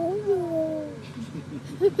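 A young girl singing a held note that rises slightly and then slides down over about a second, then breaking into laughter near the end.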